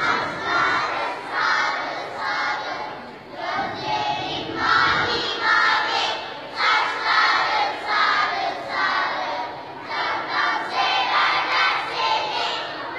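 A group of children's voices chanting or shouting together in a loud, rhythmic run of syllables, about two a second.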